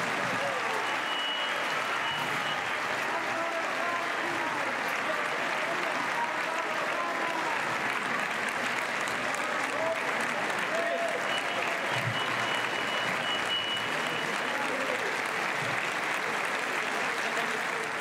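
Audience applauding steadily throughout, with voices calling out over the clapping.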